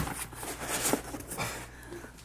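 A sharp knock, then rustling and scraping as items are stuffed into a packed suitcase.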